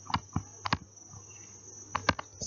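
Stylus tapping on a tablet screen while handwriting: several short light clicks, irregularly spaced, over a faint steady high-pitched whine.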